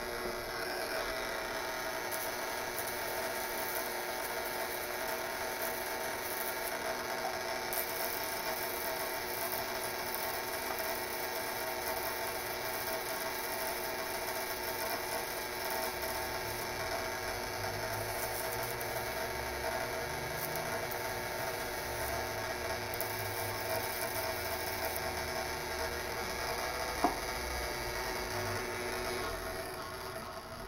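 Violet ray high-frequency electrotherapy machine running, its glowing glass electrode and coil giving a steady electrical buzz. A single sharp click comes near the end, and the buzz eases just before the end.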